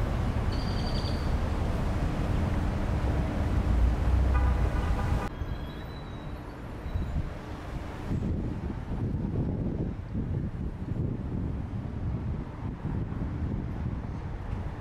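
Outdoor ambience: a steady low rumble, with a short high chirp early on and a brief pitched tone about four seconds in. Just past five seconds it drops abruptly to a quieter, thinner rumble.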